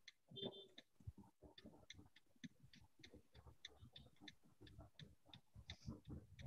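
Faint, quick clicking, about three or four ticks a second, with a few soft low thuds, over near-silent room tone on an open call microphone.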